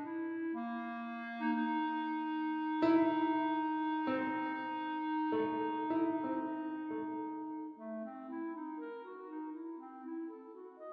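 Clarinet and piano, sample-based playback by Sibelius NotePerformer: the clarinet holds long soft notes while the piano strikes four sharp accented chords. Near the end the clarinet moves into quiet, evenly flowing runs of quick notes.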